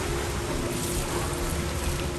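Steady rush of water in an indoor pool hall: splashing swimmers and water falling from the pool's play features, with a steady low hum under it.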